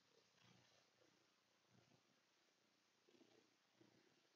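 Near silence: faint room tone with a few soft, irregular low sounds.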